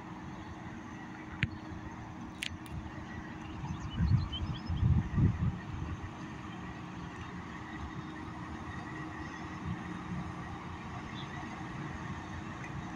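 Steady low drone from a large bulk carrier's diesel machinery as the ship passes close by, with a faint steady whine over it. A few louder low rumbles come between about four and five and a half seconds in.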